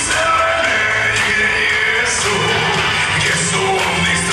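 A man singing a song into a handheld microphone over musical accompaniment, steady and loud throughout.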